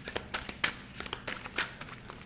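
A deck of cards being shuffled by hand: a quick, uneven run of sharp card snaps and taps.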